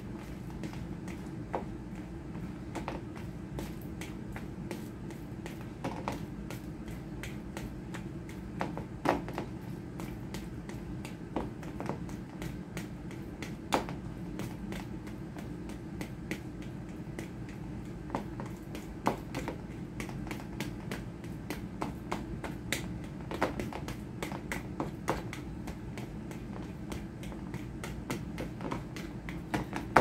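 A fork mashing a ripe banana in a plastic mixing bowl: irregular clicks and taps of the fork against the bowl, over a steady low hum.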